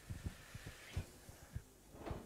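About half a dozen faint, irregular low thumps in two seconds, with no voice.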